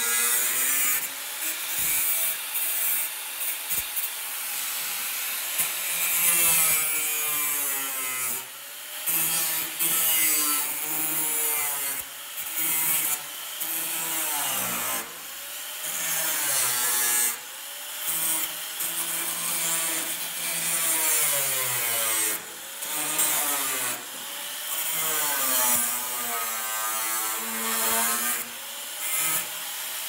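Angle grinder with a thin cut-off wheel cutting sheet steel. The motor's whine sags in pitch each time the wheel bites into the metal and climbs back between passes, over a harsh grinding hiss.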